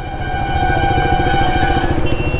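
Motorcycle engine running as the bike moves off, the sound building up over the first second, with a steady high whine over the engine's low pulsing.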